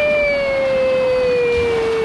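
One long held vocal cry, about three seconds, sliding slowly down in pitch, over the steady hiss of water falling from a splash-pad sprinkler.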